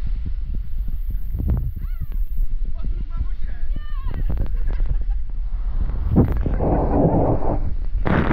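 Inflatable raft sliding down an enclosed water-slide tube: a steady low rumble of rushing water with many short knocks, and a couple of brief whoops from the riders. The water rushes louder from about six and a half seconds in, as spray hits the camera.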